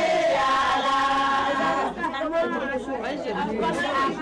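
A group of voices singing with long held notes, giving way about two seconds in to overlapping chatter and shorter, wavering voices.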